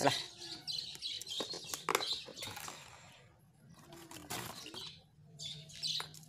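Faint bird chirps, with a few light clicks and knocks scattered through.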